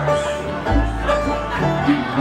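Acoustic bluegrass band playing: banjo picking over acoustic guitar, mandolin and upright bass, with a deep bass note coming in under it partway through.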